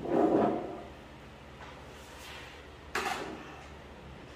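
Kitchen things being handled on a tabletop: a scraping knock lasting about half a second, then a sharper clatter about three seconds in.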